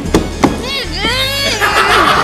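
Two sharp knocks on a tabletop a third of a second apart, as prop dynamite sticks are set down hard, followed by a man's wordless vocal sound that slides up and down in pitch.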